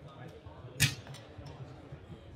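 A single sharp knock about a second in, over faint murmur of voices in the room.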